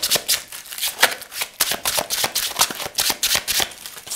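A deck of tarot cards shuffled by hand: a quick, uneven run of crisp card clicks and slaps.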